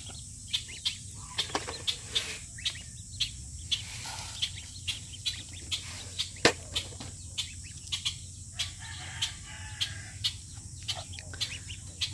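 A flock of two-day-old Welsh Harlequin ducklings and a White Chinese gosling peeping: a steady run of short, high peeps, about two or three a second.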